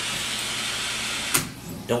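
Butane torch flame hissing steadily while heating the nail of a dab rig, then shut off with a click about a second and a half in.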